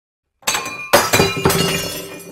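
Glass-shattering sound effect: a crash about half a second in, then two more crashes about half a second apart, with the shards tinkling and ringing as they fade.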